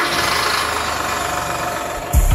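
Car engine running steadily, just after being started.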